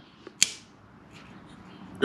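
Small rare earth magnets clicking once, sharply, against metal about half a second in as they are brought up to the steel sump plug; otherwise only a faint background.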